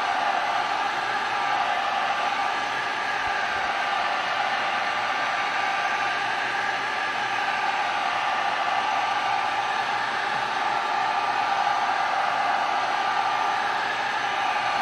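Handheld heat gun running steadily, blowing hot air onto an electronics heat sink: a constant rush of air with a steady whine of several pitches from its fan motor.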